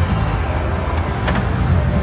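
Pharaoh's Fortune video slot machine spinning its reels: a rapid, rhythmic run of spin sound effects and game music, with a couple of sharper clicks about a second in, over a loud, steady din of casino background noise.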